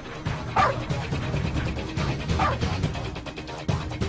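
A dog barking twice, about two seconds apart, over background music.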